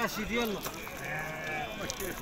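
Sheep bleating several times, with people's voices in the background.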